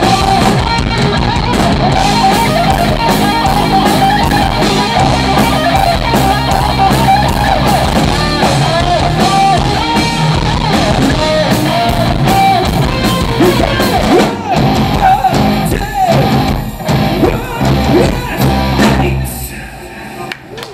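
Live rock band playing loud, with electric guitars, bass guitar and drums and a lead line of bending notes. In the last few seconds the band breaks into stop-start hits as the song comes to its end.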